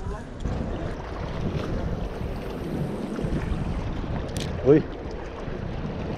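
Steady wind noise buffeting the microphone on an open seashore, with a sharp click and a short vocal exclamation about three-quarters of the way through.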